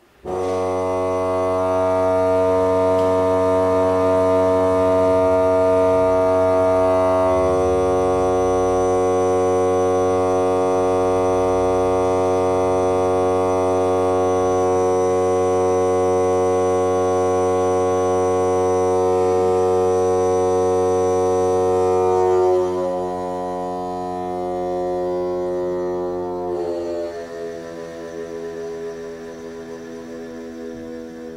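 Pipe organ playing a loud, sustained full chord that enters suddenly and holds for about 22 seconds. It then moves to quieter chords that fade near the end.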